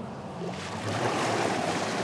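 Wakeboard skimming across a lake as a cable tow pulls the rider off a dock start: a rushing hiss of water and spray that swells about half a second in and holds steady.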